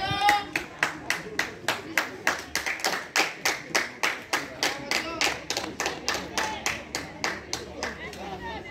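Hands clapping close by in a steady rhythm, about four claps a second, as spectators applaud at a football match. A voice ends just as the clapping starts.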